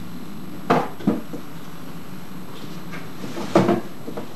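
Short sharp thumps from a karateka's movements during the Sanchin kata: two about a second in, then a quick double thump near the end, over a steady background hum and hiss.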